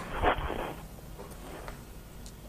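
A brief rustling noise over a telephone line, cut off above the telephone band, then only the faint steady hiss of the open line.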